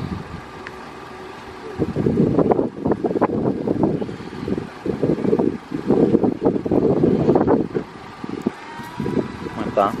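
Muffled, indistinct talking in choppy bursts for most of the time, ending in a laugh.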